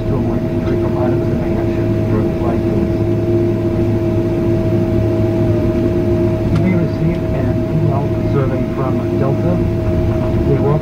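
Cabin noise inside a Boeing 767-400 rolling along the ground after landing: a steady engine hum with two constant tones, one low and one higher, over a low rumble. Indistinct passenger voices sound faintly beneath it.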